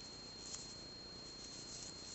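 Quiet room tone with a faint, steady high-pitched whine and one soft tick about half a second in.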